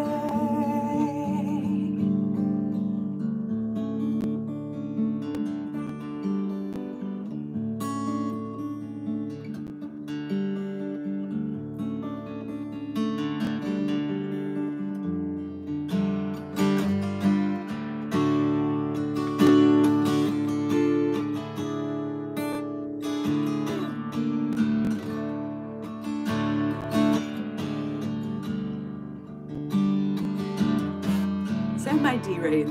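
Acoustic guitar strummed and picked in an instrumental passage at the close of a song. A held, wavering sung note trails off in the first second.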